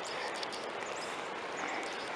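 Steady outdoor ambience: an even rushing hiss across the wooded valley, with a few faint, high bird chirps.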